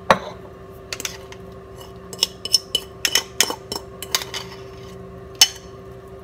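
Metal fork scraping and clinking against a ceramic bowl as a bean mixture is scooped out into a stainless steel saucepan: a string of irregular sharp clicks and taps. A steady low hum runs underneath.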